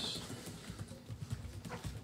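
Faint, irregular soft knocks and taps, like small handling sounds at a table, during a pause in talk.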